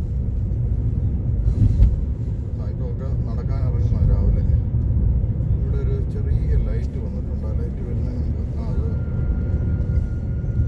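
Steady low rumble of a road vehicle on the move, with faint voices in the middle and a thin steady tone coming in near the end.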